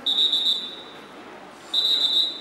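A whistle blown in two short, steady, high blasts, each about half a second long, about a second and a half apart: the referee's whistle signalling swimmers to the starting blocks.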